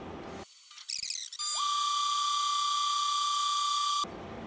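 Thunder Nova 35 CO2 laser cutter giving a loud, steady high-pitched tone with a click just before it, as it runs a new engraving test on EVA foam.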